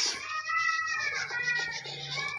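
A cat meowing: one drawn-out meow that rises and falls in pitch.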